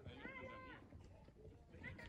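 Faint voices of people some distance off, with one drawn-out high-pitched voice about half a second long near the start.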